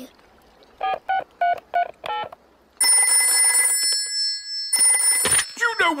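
A phone number being dialled as a quick run of about six short beeps, then a telephone bell ringing loudly in two bursts until it is answered.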